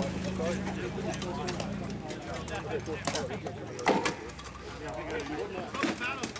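Indistinct voices talking, with a few sharp knocks in between, the loudest about four seconds in.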